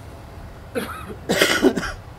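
A person coughing twice, a short cough about three-quarters of a second in and a longer, louder one near the end.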